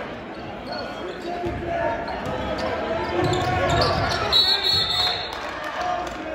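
Voices and chatter of players and spectators in a school gymnasium during a basketball game, with a short high whistle blast about four and a half seconds in.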